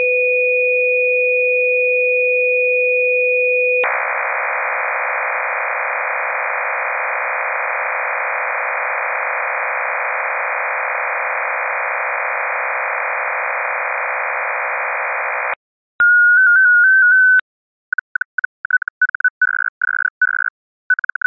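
Amateur-radio digital data-mode transmission. It opens with two steady tones, one low and one high, for almost four seconds, then becomes a dense, hiss-like multi-tone signal filling the band between them until about fifteen seconds in. After a short gap comes a brief burst of stepping tones, the RSID mode identifier that lets receiving software switch modes automatically, and then near the end a single tone keyed on and off irregularly.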